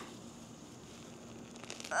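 Faint crackling and rustling of damp potting soil and fine roots as a piece is pulled by hand out of a root-bound root ball, with a few small snaps near the end.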